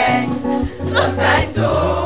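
A group of girls singing together like a choir, holding notes.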